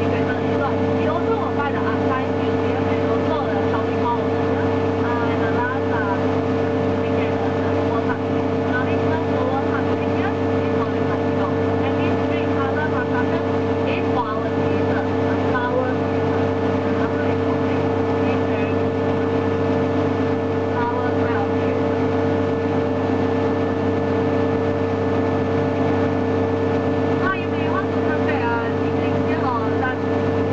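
A DUKW amphibious vehicle's engine running steadily while the vehicle cruises afloat: a constant, even drone with a strong hum.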